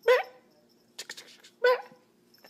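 Small white kitten mewing twice, two short high rising mews, one at the very start and one past the middle, with a few faint clicks between.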